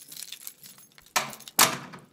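Keys jingling and rattling, then two heavy clunks about half a second apart, the second the loudest.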